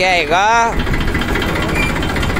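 Engine of farm machinery running steadily at a loud, even level, with a man's short spoken word over it at the start.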